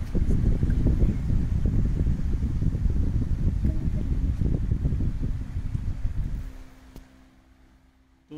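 Strong airflow from a small solar-powered DC table fan buffeting the microphone, heard as a loud, rough low rumble that dies away about six and a half seconds in.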